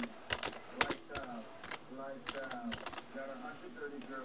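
Typing on a computer keyboard: irregular sharp key clicks, a few a second, over faint background voices.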